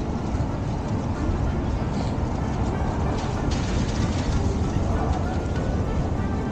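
Steady low rumble of open-air city ambience with faint background music over it.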